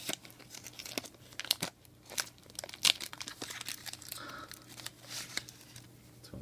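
Foil trading-card pack wrapper crinkling in irregular sharp crackles as it is handled and the cards are pulled out of it.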